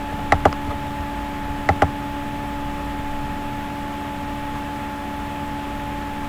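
Computer mouse clicked twice, each click a quick press-and-release pair, about a third of a second in and again near 1.7 s, over a steady electrical hum with faint hiss.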